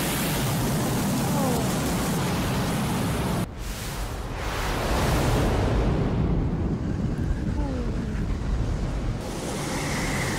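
Film sound effects of a comet impact and tsunami: a dense rushing roar of water with a deep rumble. It cuts off sharply about three and a half seconds in, then swells again.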